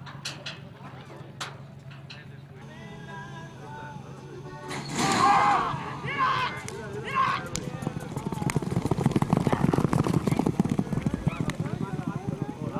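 Racehorses breaking from a starting gate and galloping on a dirt track, a fast run of hoofbeats that builds louder through the second half. Several loud cries come about five to seven seconds in.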